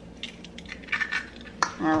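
An egg being opened by hand over a stainless steel mixing bowl of ground meat: light clicks and clinks of shell and fingers against the metal bowl, then a sharper single click about one and a half seconds in.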